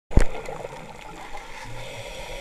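Underwater ambience recorded through a camera's waterproof housing: a steady, muffled wash of water noise. A sharp knock sounds just after the start, and a brief low hum comes near the end.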